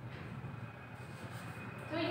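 Steady low background hum, with a marker being written on a whiteboard.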